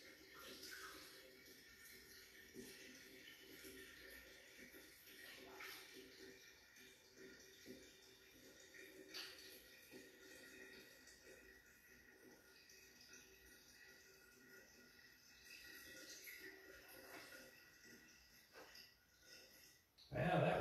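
Faint trickle of water poured slowly from a plastic jug through a funnel into a glass carboy, topping it up toward the neck.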